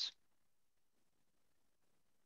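Near silence: the tail of a spoken word cuts off at the very start, then only faint room tone.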